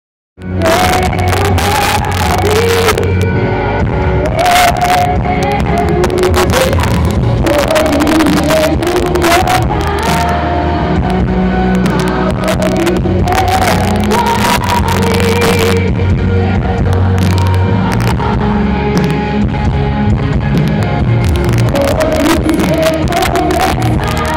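Live gospel worship band playing loudly through the PA: a woman's lead vocal over bass, keyboards and drums, heard from among the audience. The music comes in about half a second in.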